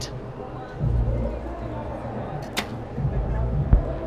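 A recurve bow shot at 70 metres: a sharp snap as the string is released, then a low thud a little over a second later as the arrow strikes the target in the 10 ring.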